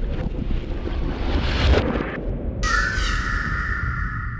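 Designed intro sound effect under a logo reveal: a low rumbling noise. About two and a half seconds in, a sustained two-note tone joins it, sliding briefly up as it starts.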